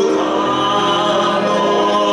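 Two male voices singing a song together into microphones, with classical guitar accompaniment, the notes held and gliding smoothly.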